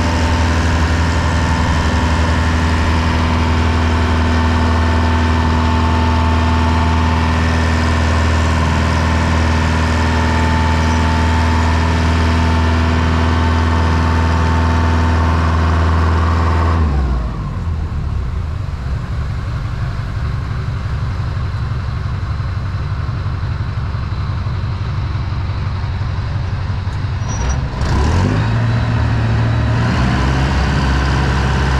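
Small river ferry's engine running steadily under way, heard from the open deck with a strong low hum. About two-thirds through it throttles down to a lower, quieter note, then its pitch rises again near the end.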